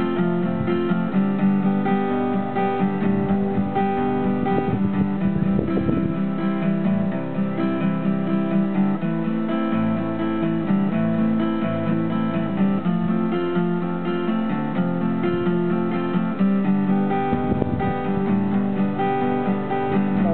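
Acoustic guitar strummed and picked in an instrumental break with no singing, its chords changing every few seconds.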